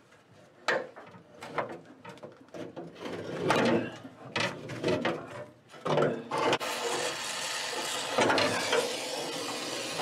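Sheet steel patch panel being bent and pried with locking pliers: irregular metal clanks and scrapes. About two-thirds of the way in, a gas torch is lit and runs with a steady hiss.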